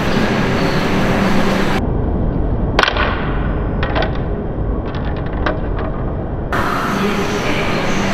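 Station platform with a train's steady rumble. About three seconds in, a sharp clatter as a pair of plastic sunglasses hits the platform, followed by a few light footstep clicks.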